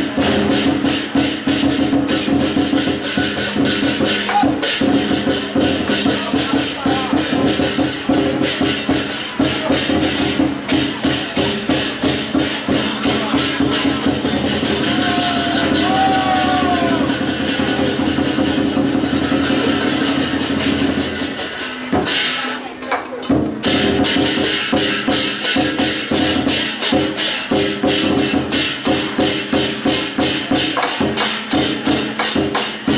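Temple-procession music: fast, continuous percussion with steady held tones underneath, the low part dropping out briefly about twenty-two seconds in.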